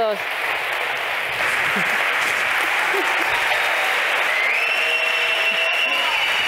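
Audience applauding at the end of a talk, the clapping growing louder about a second and a half in.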